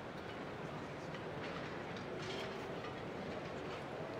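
Steady, quiet hubbub of a large banquet hall, with faint short clinks scattered through it, like cutlery on china.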